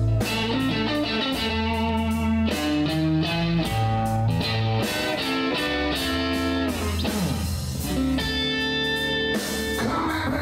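Live blues band playing an instrumental stretch led by electric guitar over a bass line and a steady beat. The guitar holds long notes, with one sliding down about seven seconds in and a high note held near the end.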